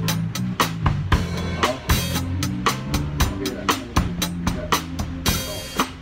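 Drum kit played along with a song's backing track: a steady beat of drum and cymbal strokes over a sustained bass line, ending on a cymbal crash near the end.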